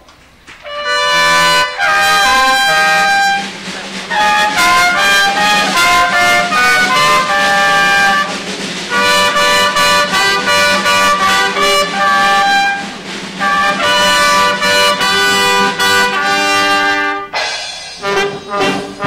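Live brass band of trumpets, saxophones and tubas playing a lively tune, coming in just under a second after a short pause, with brief breaks between phrases.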